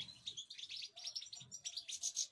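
European goldfinches twittering: a fast run of high, overlapping chirps and short trills.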